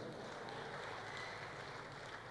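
Faint, steady background noise of a large hall with a seated audience, with no distinct events.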